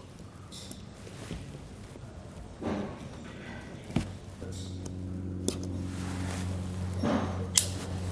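A razor knife scraping and cutting thick sealant along the top of a plastic clearance light bar on a van body, with faint handling sounds and a sharp knock about halfway through. A steady low hum begins just after the knock and carries on.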